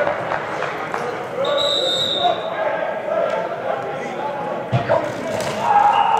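Voices calling out across a large, echoing indoor hall during football drills, with a brief high whistle tone about a second and a half in. Near the end come sharp thuds of padded players colliding.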